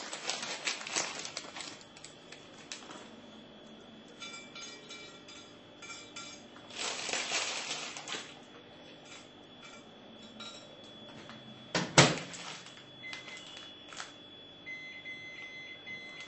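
Plastic packet of raw kerupuk crackers rustling and light clinks as the crackers are laid in a microwave oven. About twelve seconds in, the microwave door is shut with a sharp thud, followed by a few short electronic beeps from its keypad.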